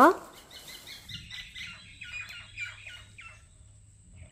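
A bird calling outdoors: a quick run of about a dozen short chirps, roughly four a second, that stops a little over three seconds in.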